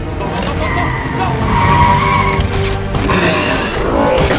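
Film soundtrack: an old Chevrolet Camaro's engine revving and its tyres squealing as it pulls away hard, with orchestral score underneath. The squeal is loudest about a second and a half in.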